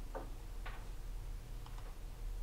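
A few faint, scattered clicks and taps over a steady low room hum: two clearer ones in the first second, then two fainter ones near the end.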